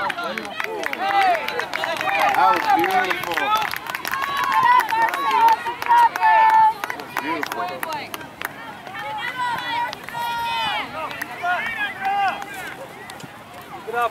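Indistinct shouts and calls from players and sideline spectators across a soccer field, voices rising and falling in pitch, some calls held briefly.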